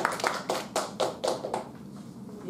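Applause from a small audience: separate hand claps about four a second, dying away about a second and a half in.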